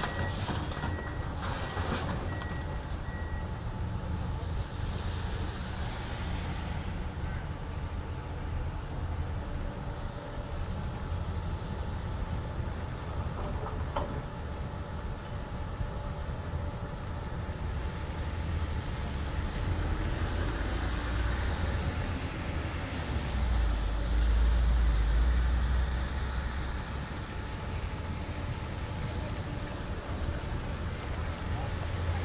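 Diesel engine of a tracked hydraulic excavator working at a building demolition: a steady low rumble that swells louder for a few seconds about three-quarters of the way through. A short run of high, evenly spaced beeps sounds in the first few seconds.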